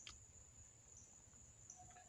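Near silence, with a faint steady high-pitched drone of insects.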